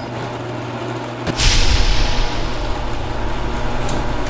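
Sound effects of an animated channel ident: a steady low hum, then about a second and a half in a sudden whoosh with a boom that slowly dies away.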